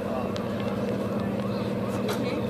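Steady hum of an engine running at a constant speed, with faint voices of people talking nearby over it.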